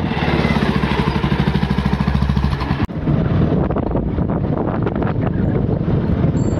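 A motorcycle engine running steadily, loud and close, with an even rapid firing beat. About three seconds in the sound breaks off for an instant and resumes as the engine under way while riding, noisier and less steady.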